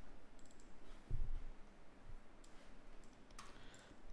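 A few faint, scattered computer mouse clicks over quiet room tone, with a low thump about a second in.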